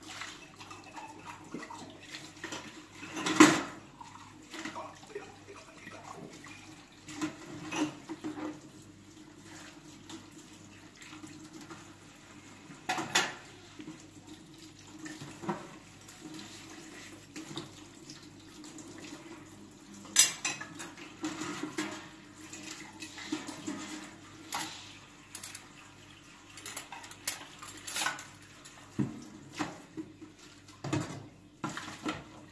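Dishes and cutlery being washed by hand in a stainless steel sink: glass, utensils and metal pot lids clink and knock against each other and the sink, over water running from the tap. Sharp knocks come at irregular moments, the loudest about three seconds in.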